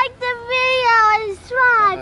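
A child's high voice singing in long, drawn-out notes, the later ones gliding down in pitch.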